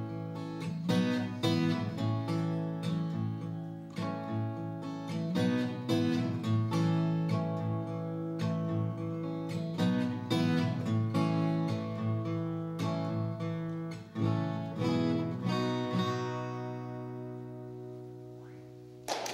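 Solo acoustic guitar playing an instrumental closing passage of single plucked notes and chords. A final chord about three-quarters of the way in is left to ring and slowly fade.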